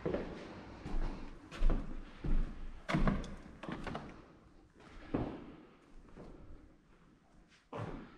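Footsteps on a debris-strewn floor: a run of heavy thuds about every two-thirds of a second, loudest in the first three seconds and fainter in the second half.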